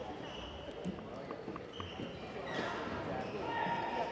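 Court shoes squeaking on the sports floor and a few sharp racket hits during a badminton doubles rally, over the chatter of a large hall; voices grow louder in the second half.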